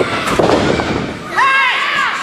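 A sharp smack, then a thud and rumble as a wrestler goes down onto the ring mat, followed about a second and a half in by a high, loud shout.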